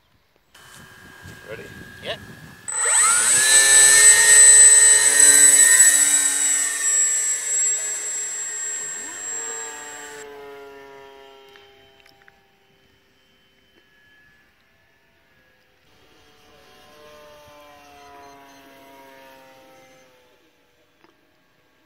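Electric RC model glider's motor and propeller running up to full power at launch: a sudden loud, high steady whine with a buzz beneath it. It slides down in pitch and fades as the model climbs away, then is heard faintly again near the end as it passes back.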